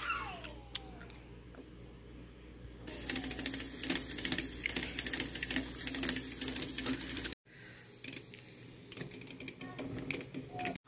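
A handheld milk frother whirring as its coil whisk spins through a greens-powder drink in a glass bottle. It starts about three seconds in and stops abruptly about seven seconds in.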